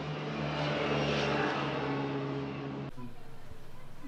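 A steady engine-like mechanical hum with a hiss, swelling slightly and then cutting off abruptly about three seconds in.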